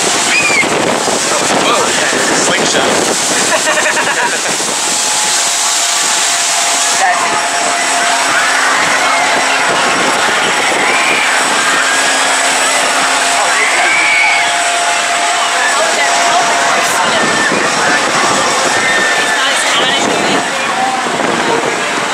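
Steady rushing of wind on the microphone high up on a Ferris wheel, mixed with indistinct far-off voices from the amusement rides below. A faint steady tone comes and goes through the middle.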